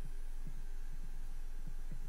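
A steady low hum with faint, soft low pulses every few tenths of a second.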